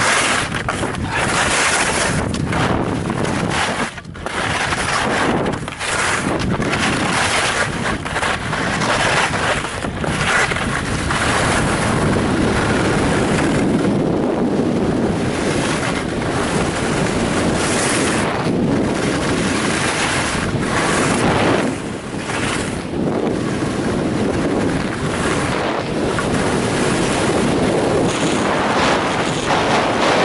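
Wind rushing over the camera microphone of a fast-moving skier, mixed with the steady hiss and scrape of skis running over packed, groomed snow, with a few brief dips in level.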